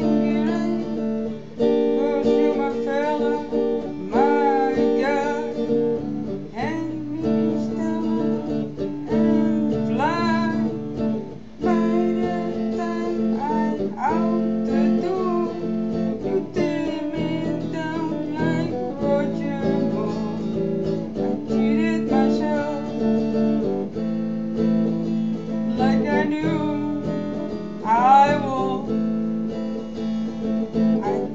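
Stratocaster-style electric guitar strumming and picking chords through a song, with a voice singing over it at times.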